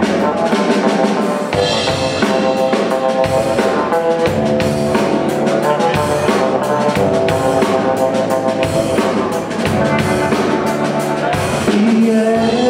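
Live band playing a song's instrumental opening: a drum kit with bass drum and snare keeping a steady beat under held keyboard and electric guitar notes.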